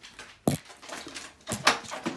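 A few sharp knocks and clicks: one about half a second in, then a louder cluster of clicks near the end.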